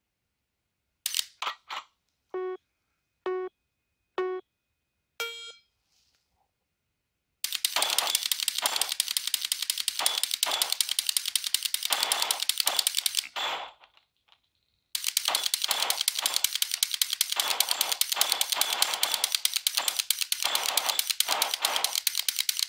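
Three short electronic beeps about a second apart and then a higher beep from the laser training app, followed by a long run of fast clicking from an AR-15 with a Mantis Blackbeard auto-resetting trigger being dry-fired as fast as it will go, with one pause of about a second and a half in the middle.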